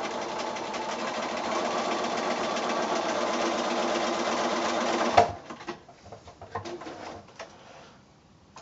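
Bernina sewing machine stitching a seam along a drawn diagonal line through cotton quilting fabric, running steadily for about five seconds and then stopping with a click. A few faint clicks follow.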